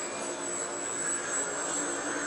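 Steady whirring hum of a remote-controlled camera car's electric drive as it turns around on carpet, with a faint constant high-pitched tone above it.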